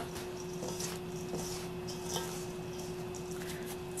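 Faint, soft rustle of gloved hands rubbing damp brown rice flour and ground mugwort together in a stainless steel bowl, over a steady low hum.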